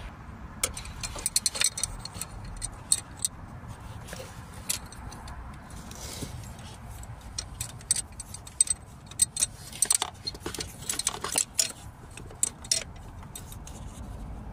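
Irregular small metallic clicks and clinks of a socket wrench and extension bar as new glow plugs are screwed into the diesel engine's cylinder head.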